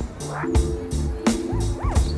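Background music with a deep stepping bass line and regular drum hits, with a few short squeaky glides over it that rise and fall in pitch.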